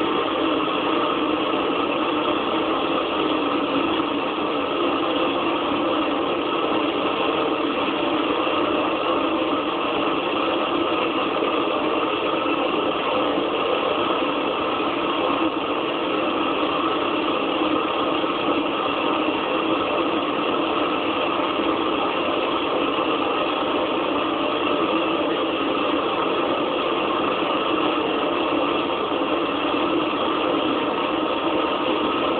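Experimental electronic noise music from a tabletop rig of mixer and effects units: a dense, steady drone-like wall of noise that holds its level with no rhythm or break.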